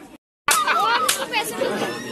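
Chatter: several people talking over one another, coming in abruptly after a split second of dead silence near the start.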